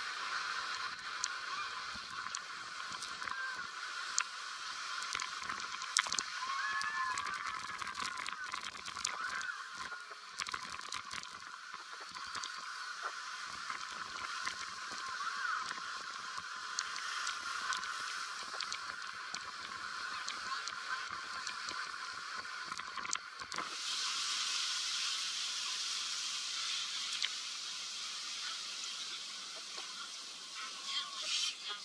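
Jet boat running through river rapids: a steady rush of engine, churning water and wind, with scattered knocks and a brighter hiss for the last few seconds.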